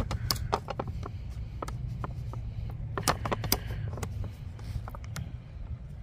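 Scattered clicks and taps of a folding camp table being put together by hand: the tabletop's edge snapping into the frame's grooves and the frame locking into place. A low steady rumble runs underneath.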